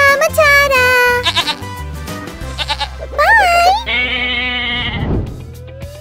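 Bleating from farm animals over upbeat background music, with a rising whistle-like glide near the end.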